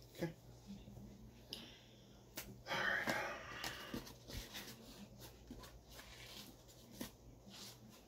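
Handling of costume armor pieces: scattered knocks and clicks as the strapped torso armor is picked up and moved. About three seconds in comes a loud breathy sound lasting about a second, the loudest moment, over a steady low hum.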